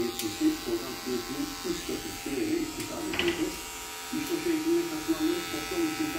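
Wahl Magic Clip hair clipper with a guard, buzzing steadily as it cuts through beard stubble to fade the beard. The buzz dips for a moment about four seconds in.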